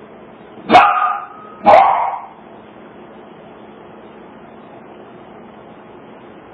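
A small dog barking twice, about a second apart, heard through a home security camera's microphone.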